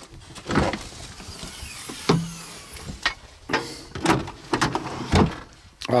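Rear door and tailgate of a Toyota Land Cruiser FZJ80 being opened up: a series of latch clicks and metal clunks, about one a second.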